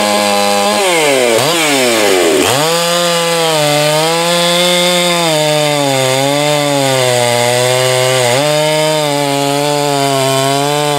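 Chinese-made 54 mm chainsaw revved up and down in quick throttle blips, then held at full throttle from about two and a half seconds in as it cuts through a log, its pitch wavering and dipping slightly under load in the cut.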